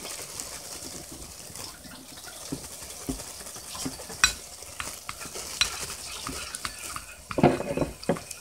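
A metal spoon stirring a thick, wet slime mixture of glue and lotion in a glass bowl, with scattered sharp clinks of the spoon against the glass. A louder clatter comes near the end.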